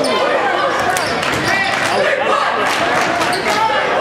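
A basketball bouncing on a hardwood gym floor during live play, a series of short thumps over the shouts and chatter of players and crowd, echoing in a large gymnasium.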